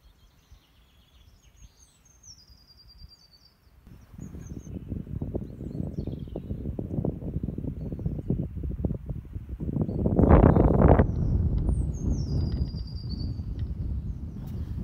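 A small songbird singing a short, high, descending phrase, repeated several times. From about four seconds in, wind buffets the microphone in a loud, uneven rumble that is strongest about ten seconds in, with the birdsong still heard over it.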